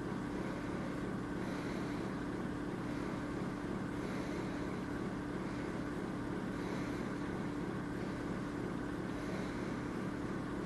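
Steady low hum made of several pitches, with a layer of hiss, unchanging in level; a faint soft swish recurs every two to three seconds.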